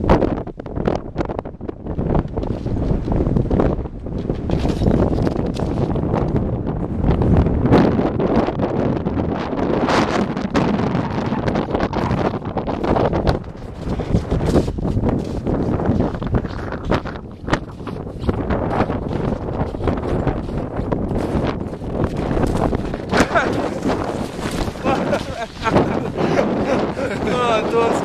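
Wind buffeting the camcorder's built-in microphone, a heavy low rumble that swells and drops in uneven gusts.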